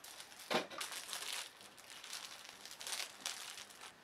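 Thin plastic wrapping crinkling as a small packet is handled and opened by hand. There is a sharp crinkle about half a second in, then more crinkling around one second in and again near three seconds in.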